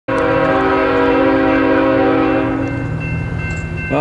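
Air horn of a BNSF diesel freight locomotive blowing one long, loud blast that fades about two and a half seconds in, as the train approaches. The locomotives' engines keep up a steady low drone beneath it.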